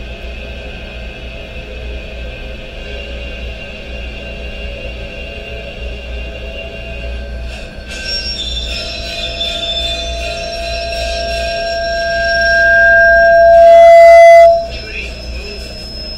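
Animated film soundtrack: tense music over the steady rumble of a train, with a high squeal that swells for several seconds to the loudest point and cuts off abruptly about a second and a half before the end.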